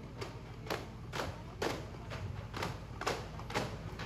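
Daff frame drums beaten softly in a steady rhythm, about two strokes a second.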